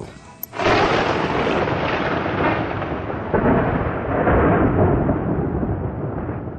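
Recorded thunderstorm sound effect: an even hiss of rain with rumbling thunder, starting about half a second in and growing gradually duller toward the end.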